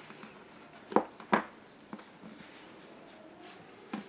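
Two short, sharp knocks about a second in, a third of a second apart, from the crochet hook and work being handled against a tabletop. A fainter tick follows and another comes near the end, over quiet room tone.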